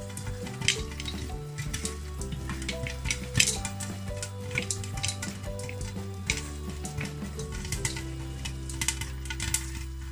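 Popcorn kernels popping in hot oil in a covered pot with a glass lid: irregular sharp pops, several a second, over a steady sizzle.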